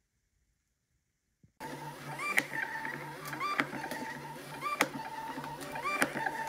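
LabelRange BT320 thermal label printer feeding labels, its motor running with a low hum and a whine that rises in steps, with a click about every 1.2 seconds. It starts about a second and a half in, after a silent gap.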